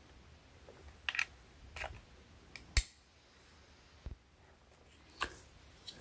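Faint handling of a plastic security camera and an Ethernet cable, with one sharp click a little under three seconds in as the RJ45 plug snaps into the camera's Ethernet port; a few small ticks follow.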